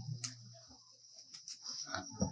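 A pause in a 1972 lecture tape: faint steady low hum and hiss, with a brief low voice-like sound at the start and a few faint clicks.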